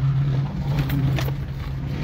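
Car engine and road noise heard from inside the cabin while driving, a steady low drone.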